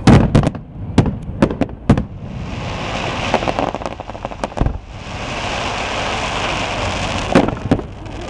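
Aerial firework shells bursting: a quick run of sharp bangs in the first two seconds, a steady crackling hiss through the middle, and two more bangs near the end.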